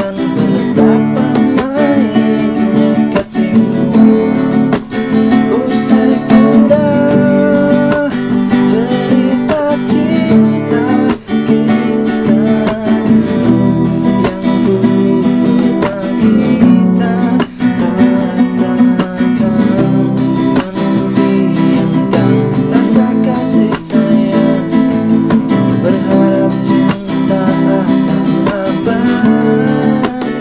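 Acoustic guitar strummed steadily, an instrumental passage with no voice.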